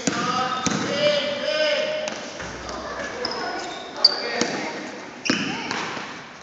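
Basketball game in an echoing gym: voices shouting from the court and sidelines, loudest in the first couple of seconds, over a basketball bouncing on the hardwood floor.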